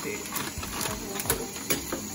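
A plastic bag of shrimp crinkling as it is shaken over a plate in a steel sink, with a few light knocks as the shrimp tumble out.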